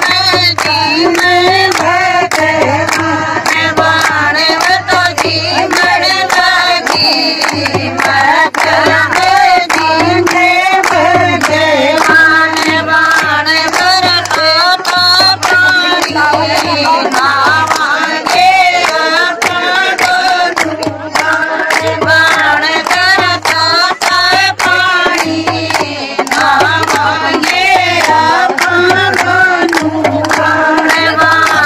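A group of women singing a Haryanvi devotional folk song (a Krishna bhajan) together in unison, kept in time by a steady rhythmic beat of hand claps.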